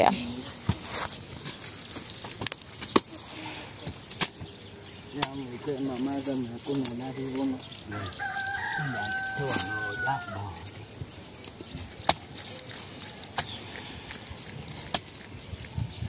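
Clay bricks knocking and clattering as they are laid by hand, with a voice talking in the background and a rooster crowing once, about eight seconds in.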